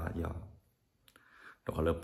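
A man speaking, with a short pause of near silence in the middle before he goes on talking.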